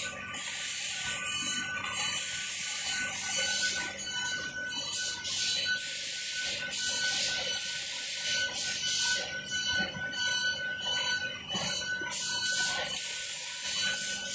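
Industrial book-binding machine running: a steady high whine under mechanical clatter, with bursts of hiss every second or two.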